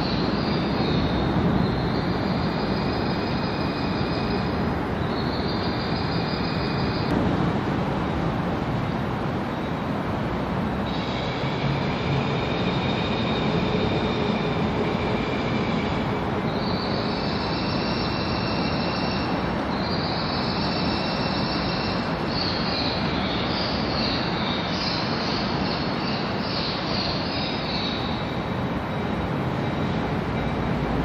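Train wheels squealing against the rails over the steady rumble of a rolling train: high squeals of several pitches at once, coming and going every few seconds.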